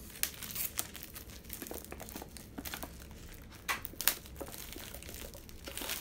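Crinkly plastic food packaging, the wrapping of the noodles about to be eaten, being handled and torn open: irregular rustling with sharp crackles, the loudest a pair a little under four seconds in.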